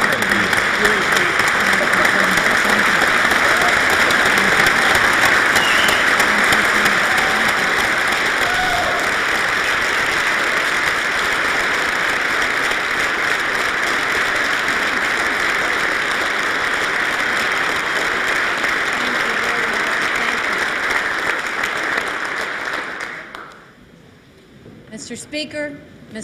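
A large crowd applauding steadily, a long ovation that fades out just before the end.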